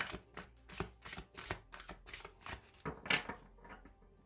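A deck of tarot cards being shuffled by hand: a quick run of short papery strokes, about three a second, that stops shortly before the end.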